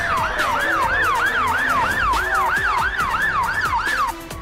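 An emergency-vehicle siren sound effect in a fast yelp, sweeping up and down about three times a second over a low rumble and a slow falling tone. It cuts off sharply at the end.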